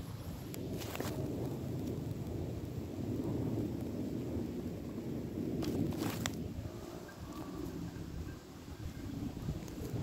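Wind buffeting a phone's microphone, a steady low rumble, with two brief clicks about one second and six seconds in.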